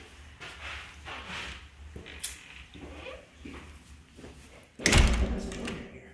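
Quiet stretch with faint movement and light knocks, then a loud thump about five seconds in: the front door being shut behind a visitor.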